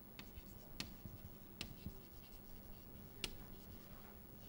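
Chalk writing on a blackboard: faint scratching strokes broken by a few sharp taps as the chalk strikes the board, the loudest near the end.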